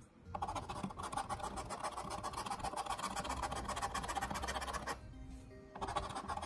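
Coin scratching the coating off a scratch-off lottery ticket in quick, rapid strokes, stopping about five seconds in, with background music underneath.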